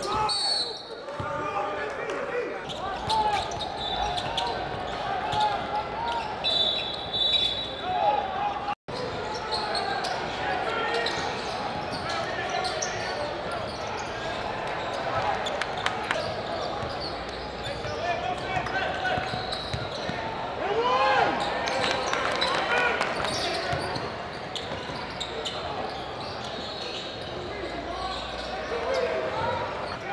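Live basketball game sound in an echoing gym: the ball bouncing on the hardwood court, sneakers squeaking, and voices of players and spectators. The sound cuts out for an instant about nine seconds in, at a cut between clips.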